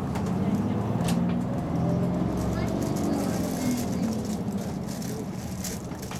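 Diesel engine of a city bus running as the bus drives and turns, heard from inside at the front. Its low hum fades a little towards the end, and a couple of sharp clicks come about a second in and near the end.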